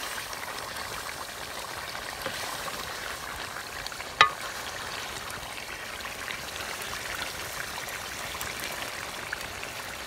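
Chicken curry sizzling steadily in a steel pot over a wood fire while a metal ladle stirs the meat and gravy. About four seconds in there is a single sharp clink of the ladle striking the pot.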